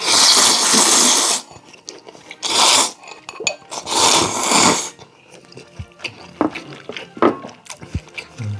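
Loud slurping of jjamppong noodles and broth from a bowl: three long slurps in the first five seconds, the first lasting about a second and a half, followed by quieter chewing.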